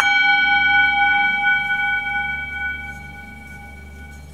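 Tibetan singing bowl struck once with its wooden mallet, ringing with several clear overtones that slowly fade.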